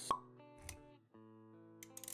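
Motion-graphics intro sound effects over background music: a sharp pop just after the start and a softer thud with a click a little over half a second in. The music drops out for a moment about a second in, then returns with held notes.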